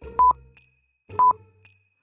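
Countdown timer sound effect beeping once a second: two short, sharp electronic beeps, each with a soft low thump, over a faint music bed.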